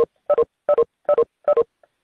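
WebEx meeting exit chimes: a two-note electronic tone stepping down in pitch, repeated five times about two and a half times a second, as participants leave the call one after another.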